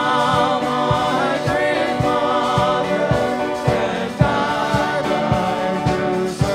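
Live gospel worship music: several voices singing together with a band over a steady beat of about two beats a second.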